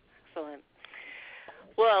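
A short hummed vocal sound with falling pitch, then an audible breath drawn in for about half a second, before speech begins near the end.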